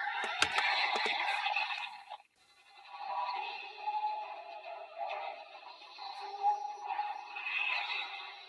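Toy transformation belt (a custom-painted DX Legendriver) playing electronic sound effects and music through its small speaker, with sharp plastic clicks in the first second as a card is loaded. The sound cuts out about two seconds in, then a new tune starts up as the screen glows.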